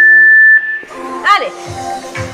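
Loud electronic beep, one steady high tone under a second long, in a gap in the workout music. About a second and a half in, music with a steady beat comes back, led in by a falling swoop.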